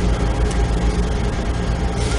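Steady low background hum with a constant hiss over it, the even drone of room or recording-system noise, with no speech.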